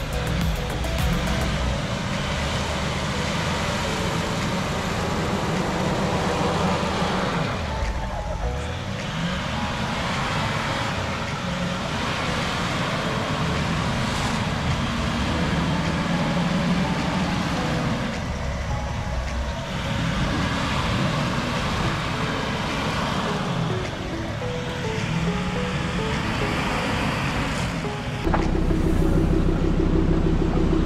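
Background music over a Land Rover Discovery 4's engine working under load. The engine note drops and climbs again three times as the throttle is eased and reapplied. Near the end it cuts abruptly to a louder, steadier engine sound.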